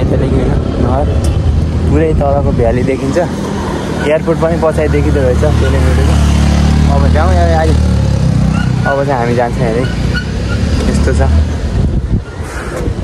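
A man talking in short stretches over a loud, steady low rumble that carries on under the speech and fades just after the end.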